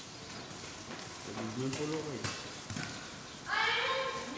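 Ponies walking on the sand of an indoor riding arena, with people's voices: a low voice about a second and a half in, then a loud high-pitched voice starting just before the end.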